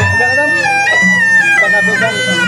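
Pencak silat accompaniment music: a reedy shawm-like trumpet (tarompet) plays a wavering melody that slides between notes, over low drum strokes.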